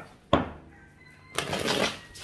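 A deck of tarot cards being shuffled: one sharp tap about a third of a second in, then a short rustle of the cards being shuffled near the end.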